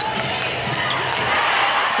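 Basketball game sound: a ball bouncing on a hardwood court with sneaker sounds, over steady arena crowd noise.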